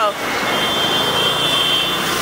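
Street traffic noise, an even rush of passing vehicles. About half a second in, a high, thin steady tone joins it.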